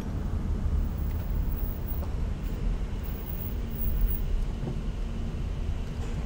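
Steady low rumble of a car on the move, heard from inside the cabin: engine and road noise, with a faint steady hum coming in a little past halfway.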